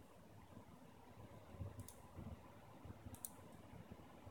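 Near silence with a few faint computer mouse clicks, about two and three seconds in.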